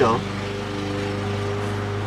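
Lawn mower engine running with a steady, even drone.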